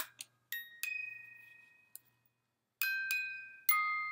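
A small music box shaped like an old wooden wall telephone playing its tune: a couple of clicks at the start, then single bright plucked notes that ring and die away slowly. There is a short gap about two seconds in before the notes pick up again.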